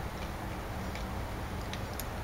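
A few faint, light clicks of a fork against a plate, spaced well apart, over a steady low background rumble.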